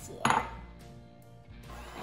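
A single sharp clink of kitchenware, a hard utensil or bowl knocking against glass or stone, about a quarter second in. It fades over about half a second and leaves a faint steady hum.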